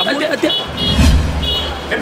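A low rumble of a motor vehicle going past, swelling from about half a second in and fading near the end, under a man's talking voice and some short high chirps.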